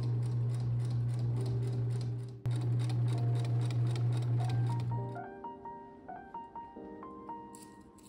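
Electric home sewing machine stitching through thick quilted fabric: a steady motor hum with rapid even needle strokes, breaking off briefly about two and a half seconds in and stopping about five seconds in.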